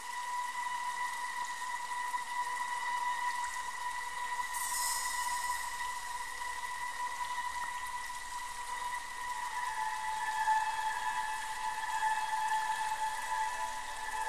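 Ambient background music of long, steady held tones, which step slightly lower in pitch about two-thirds of the way through, with a brief bright shimmer about four seconds in.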